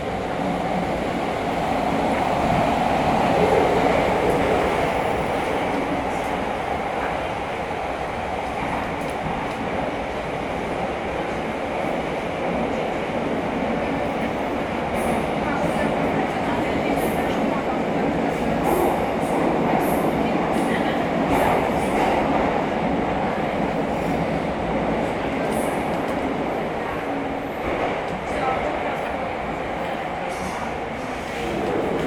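Metro train running, heard from inside the passenger car: a steady rumble and rush of the wheels on the rails, swelling a little about three seconds in.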